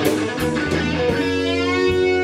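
Live blues band playing instrumentally: electric guitars, one a Les Paul-style and one a Stratocaster, over bass and drums. Held guitar notes bend in pitch, and cymbal strikes come at a steady beat.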